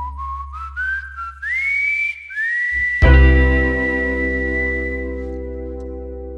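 A whistled melody climbs in a few sliding steps to a long held high note. About three seconds in, a final sustained chord joins it, and both slowly die away as the song ends.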